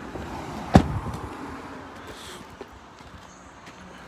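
A single sharp knock about three-quarters of a second in, against a steady outdoor background hiss.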